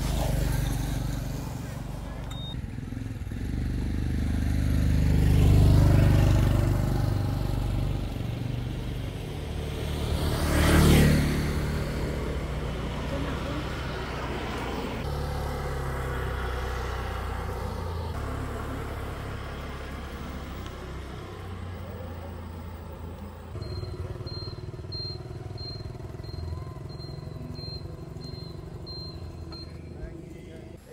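Motor scooter engine running and pulling away, swelling about five seconds in, with a loud pass close by about eleven seconds in, then running on more steadily. Near the end a repeated high chirp sounds a few times a second.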